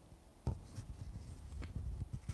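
Light rustling and small irregular clicks and knocks from handling paper on a desk, starting about half a second in.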